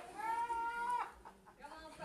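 A short, high-pitched voice call that rises a little and then holds for under a second before cutting off.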